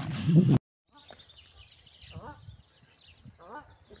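A voice talking that cuts off abruptly about half a second in, then faint outdoor quiet with a few brief, faint calls.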